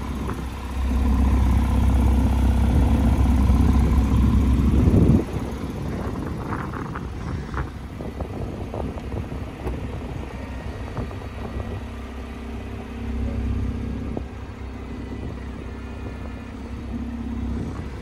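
Power targa roof mechanism of a 2019 Porsche 911 Targa 4 GTS running through its opening cycle. A loud low motor hum starts about a second in, rises slightly and cuts off suddenly a little after five seconds, followed by quieter whirring as the rear glass lowers.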